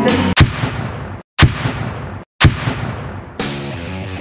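Three loud, sudden booming hits about a second apart, each ringing out before the next. They are trailer-style impact effects, and a heavy rock track starts up near the end.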